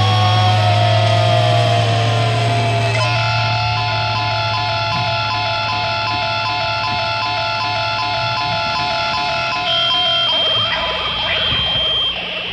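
Outro of a rock song. A held low note with slowly bending higher tones gives way, about three seconds in, to a pulsing, evenly repeating pattern of tones, and a single high steady tone takes over near the end.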